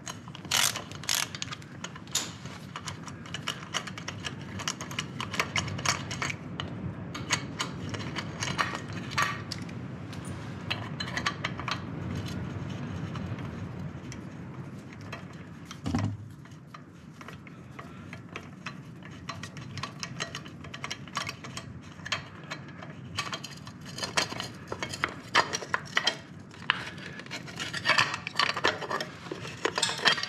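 Ratchet wrench with a 5 mm Allen bit clicking in quick runs as it backs out the bolts holding the chrome cylinder cover on a Yamaha Virago 535, with one louder knock about halfway through.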